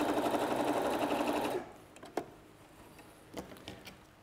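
Crafter's Companion electric sewing machine sewing a long straight gathering stitch along folded fabric, running steadily and stopping suddenly about one and a half seconds in. A few faint clicks follow as the fabric is handled.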